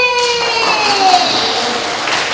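A woman's voice through a microphone holding a long drawn-out note that slides down in pitch. A broad rush of noise starts just after the beginning and runs under it.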